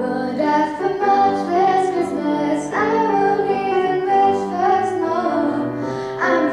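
A teenage girl singing solo with live grand piano accompaniment.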